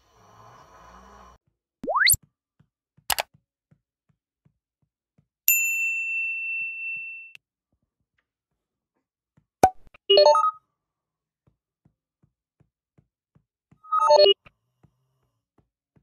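Editing sound effects for an on-screen subscribe-and-bell animation: after a brief rustle, a fast rising swoosh about two seconds in, then a click, a bell-like ding held for nearly two seconds, a click, and two short sparkly chimes about four seconds apart.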